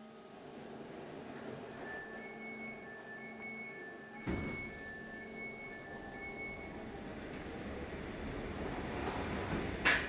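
Cinematic title-sequence sound design: a swelling whoosh with a deep boom about four seconds in, a run of alternating high electronic beeps, and a sharp impact hit just before the end.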